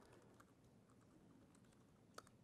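Faint typing on a laptop keyboard: a scatter of light key clicks as a command is typed.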